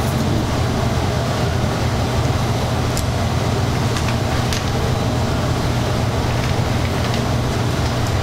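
Steady low rumble with hiss and no speech, with a few faint clicks about three and four seconds in.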